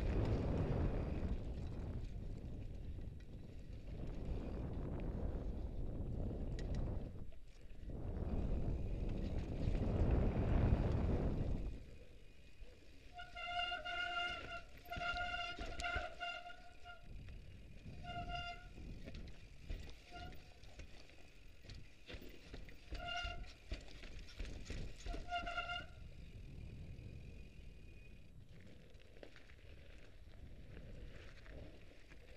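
Mountain bike ridden down a rough forest trail: loud rushing wind and tyre-and-rattle noise for about the first twelve seconds. Then slower riding with a string of short squeals, all on one pitch, that come and go until near the end.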